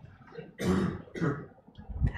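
A man's two short throat-clearing coughs, the second a little weaker, a bit over half a second apart.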